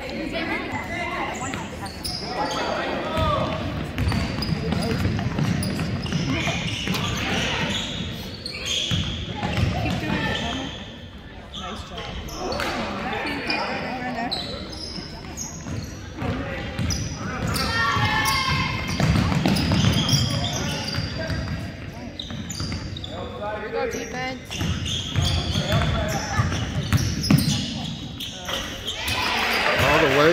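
Basketball dribbled on a hardwood gym floor, its bounces coming in runs of thumps, amid voices of players and spectators echoing in a large gym.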